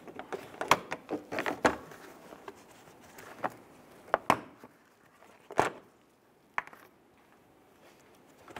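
Plastic filler panels on a 2005 Chrysler 300's front end being worked loose and pulled out by hand: a run of small plastic clicks and knocks, then two sharper clicks about a second apart.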